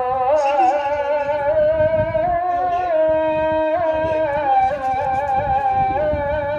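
A single voice chanting an Islamic chant in Arabic, holding long notes with wavering, sliding ornaments.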